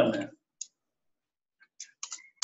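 Computer keyboard keystrokes: a single click just over half a second in, then a quick run of clicks near the end.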